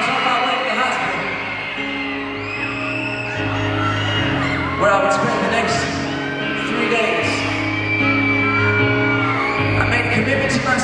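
Slow, sustained backing chords with low notes held and changing every second or two, under an arena crowd of fans screaming and whooping, echoing in the large hall.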